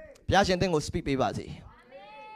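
A man's voice speaking into a handheld microphone, a short phrase with a rising and falling pitch, starting a moment in.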